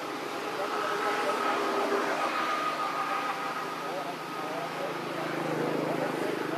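Indistinct voices over a steady background hum.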